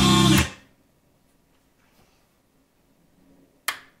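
Music played through a Technics SA-700 stereo receiver cuts off about half a second in. Near silence follows, broken by a single sharp click near the end.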